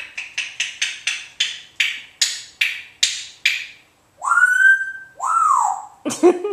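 African grey parrot making a run of sharp tongue clicks, about three a second, then two loud whistled notes, the first rising and held, the second falling, like a "woo hoo".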